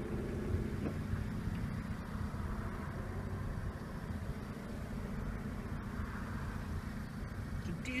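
Car driving slowly, heard from inside the cabin: a steady low rumble of engine and tyre noise.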